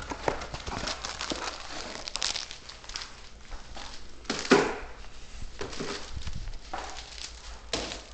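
Rustling, crinkling and knocking handling noises, with a louder burst of noise about halfway through.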